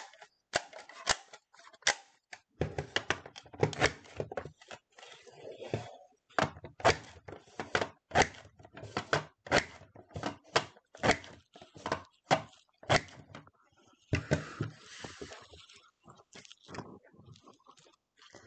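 A Creative Memories Border Maker with the Home Sweet Home edge cartridge, pressed again and again as it is stepped along the edge of dark blue paper: a run of sharp clicks and thunks, about two a second. Near the end the clicks give way to a softer rustle of paper sliding.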